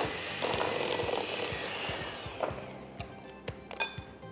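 Electric hand mixer beating butter, flour and sugar to a crumbly dough in a glass bowl, fading out about two seconds in. Background music with a steady beat carries on underneath and is left on its own after the mixer stops.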